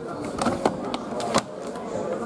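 Three sharp clicks or knocks: two about half a second in, close together, and one more about a second and a half in, over low background noise.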